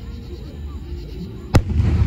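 Aerial firework shell bursting with one sharp, loud bang about one and a half seconds in, followed by low rumbling.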